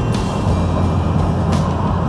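Steady drone of a Class C motorhome driving at highway speed, heard from inside the cab: engine and road noise, with music playing over it.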